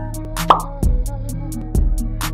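Intro music with a steady beat and heavy bass, with a short rising pop sound effect about half a second in.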